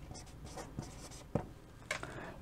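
Chalk writing on a chalkboard: faint scratching strokes with a few short sharp taps in the second half as a word is written and finished with a dot.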